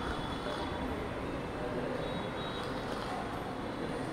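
Steady low rumble and hiss of distant road traffic.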